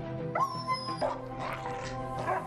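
Several short dog yelps and barks, about half a second apart, over background music with held notes.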